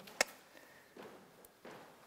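A single sharp click about a fifth of a second in, then quiet room tone.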